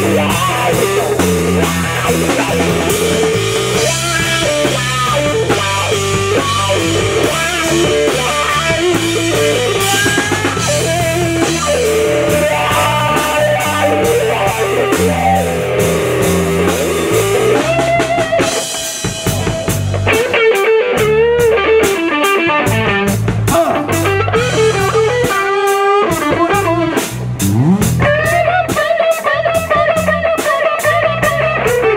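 Live blues-rock band playing an instrumental passage: an electric guitar solo with wavering, bent notes over a drum kit.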